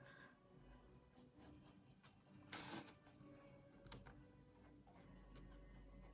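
Near silence with faint scratchy strokes of a paintbrush on canvas, one louder brush stroke about two and a half seconds in.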